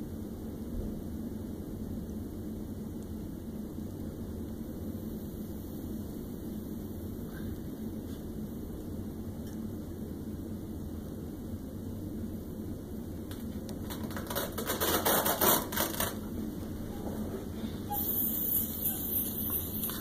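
Steady low room noise while the air of a manual blood pressure cuff is slowly let out; about fourteen seconds in comes a short run of clicks and rustling, and near the end a hiss as the rest of the air is let out of the cuff.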